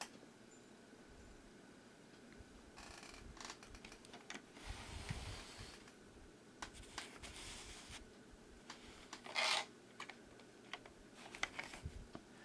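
Faint handling noise as a toy truck and its trailer are handled on fabric: scattered small clicks and soft rustles, with a louder short rustle about nine and a half seconds in.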